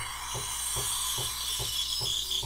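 Breville Barista Pro steam wand hissing steadily into a glass of soapy water, the start of steaming. Under the hiss, a faint regular pulse comes from the machine about two or three times a second.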